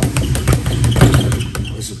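A newly hung, lighter speed bag being punched in a fast, continuous rhythm, the bag rattling against the wooden rebound board in a rapid run of sharp strikes that starts abruptly. The rhythm stops just before the end as the bag is caught.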